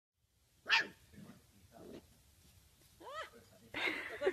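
A puppy yapping: a few short, high barks, the loudest about a second in and another near the end.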